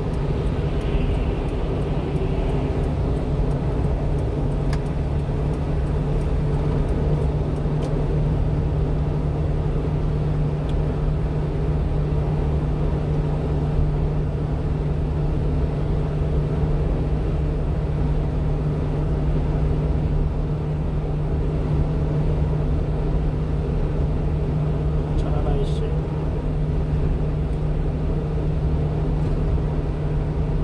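Steady drone of a small truck's engine and tyres at highway cruising speed, heard from inside the cab, with a constant low hum throughout.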